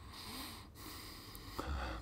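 A man's faint breath through the nose, a soft hiss in the first part, with a small click near the end.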